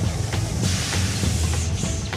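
Background music with a rushing noise from about half a second in to near the end: a cartoon sound effect of a dump truck's load of dirt pouring out as the bed tips.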